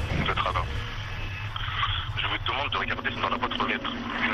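A man's voice heard in a recorded telephone call, thin and narrow as through a phone line.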